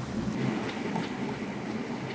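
A spoon stirring liquid jesmonite mix in a small plastic cup makes a steady low, gritty scraping, with a few faint clicks.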